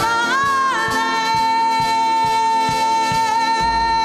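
Live band music: a single high note bends up and is then held steady for about three seconds over drum hits about two a second, with a low bass coming in near the end.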